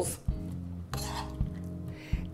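A spoon scraping and giving a few light clicks as sausage filling is scooped from a skillet into a hollowed zucchini half, under soft background music.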